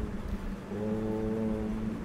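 A man's voice holding one long, steady note of a Sanskrit chant, the pitch unwavering. It swells in a little under a second in, over a low steady tone.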